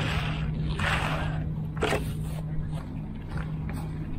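A hand tool scraping and pushing through wet concrete, two drawn-out strokes near the start and a short knock just before two seconds, over the steady low hum of an engine running that stops about three quarters of the way through.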